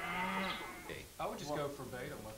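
Cattle mooing, two calls, the second starting a little over a second in.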